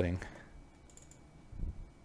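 A few quiet computer keyboard key and mouse clicks, about a second in and again a little later.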